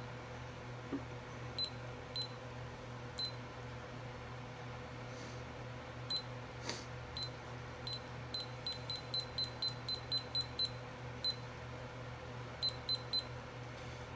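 Short high electronic beeps from the buttons of a digital cooking thermometer being pressed to set a 165-degree target temperature: a few single beeps, then a quick run of about four a second midway, and a few more near the end. A steady low hum sits underneath.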